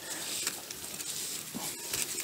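Soft rustling and scraping of a thick mooring rope being pulled tight and gathered into a coil by hand.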